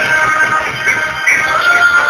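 Loud music with a singing voice, holding a long note near the end.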